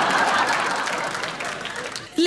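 Audience applauding, the clapping dying away over the two seconds.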